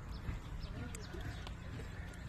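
Faint outdoor background in a pause between speech: a low steady rumble with a few soft clicks and faint distant voices.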